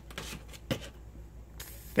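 Faint rustling and handling noise, with a single click about a third of the way in and a short hiss near the end.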